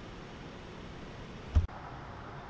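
Steady background noise, broken about one and a half seconds in by a single short, loud low thump and a split-second dropout.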